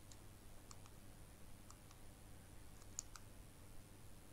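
Near silence: faint room tone with a few scattered, short clicks, the sharpest a pair about three seconds in.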